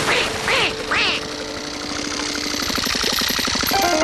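Cartoon duck quacking three times in quick succession, about half a second apart, over background music. A hissing rush builds toward the end.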